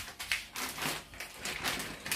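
Tortilla chips tipped from a plastic bag into a glass baking dish: a run of light, irregular crackles and clicks from the crinkling bag and the chips dropping into the dish.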